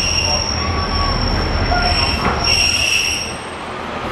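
Interior ride noise of a Class 142 Pacer diesel multiple unit: a steady low rumble from the running gear under a constant high whine, with wheel squeals coming and going at the start and again around the middle. The noise eases a little near the end.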